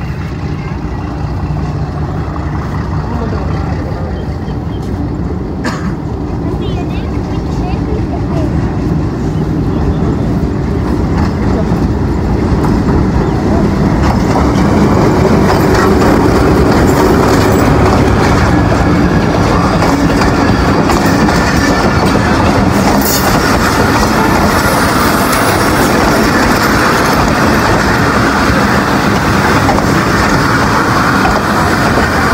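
Pakistan Railways diesel locomotive hauling a passenger train into the station. The engine and the wheels on the rails grow steadily louder as the locomotive draws close, then the coaches keep rolling past.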